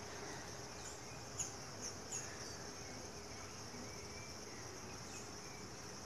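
Quiet outdoor ambience dominated by a steady, high-pitched insect trill, with a few short chirps in the first two or three seconds.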